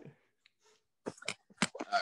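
About a second of near silence, then a quick run of short clicks and knocks as a phone is handled and repositioned.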